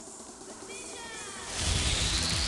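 Start of a TV sports-news intro sting: a few faint falling electronic tones, then about one and a half seconds in a loud whoosh with deep bass as the intro music begins.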